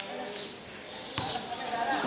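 A basketball striking the outdoor concrete court once, a sharp thud about a second in.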